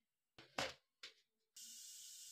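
A few brief clicks, then about one and a half seconds in a steady faint sizzle of hot oil starts in a pressure cooker.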